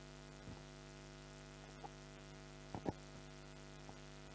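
Steady electrical mains hum from the microphone and sound system. A few brief faint sounds break through it, the strongest a pair close together just before three seconds in.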